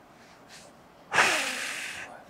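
A single loud breath close to the microphone, starting suddenly about halfway through and fading away.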